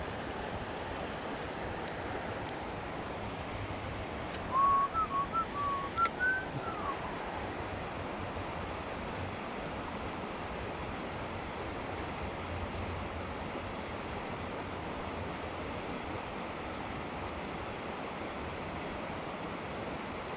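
Steady rushing of river water, with a short whistled phrase of about eight notes about five seconds in, climbing and then dropping in pitch, from a person whistling to himself.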